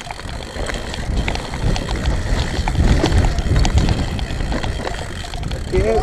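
Mountain bike ridden fast down a rough dirt forest trail: wind buffeting the camera microphone as a heavy rumble, with tyre noise and scattered clicks and rattles from the bike over bumps. A shout of "whoa" near the end.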